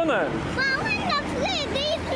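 A young girl's high-pitched voice talking.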